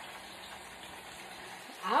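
Tilapia and fries frying in hot oil in a double deep fryer: a steady, even sizzling hiss. A woman's voice starts just at the end.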